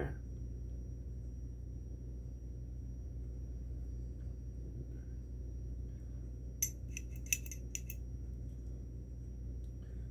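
Light metallic clicks and clinks in a quick run about seven seconds in, from an aftermarket camshaft with its timing gear being handled, over a steady low hum.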